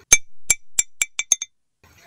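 A glass marble dropped onto the pan of a weighing scale and bouncing to rest: about six bright, ringing clinks that come closer together as it settles.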